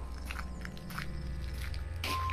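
Quiet footsteps with a crunching tread, an approaching walker's sound effect, over a low steady background drone.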